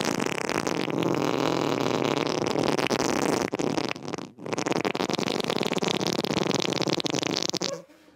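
A person making a long, loud raspy noise with the mouth pressed against the hands, in two stretches of about four seconds with a brief break between them.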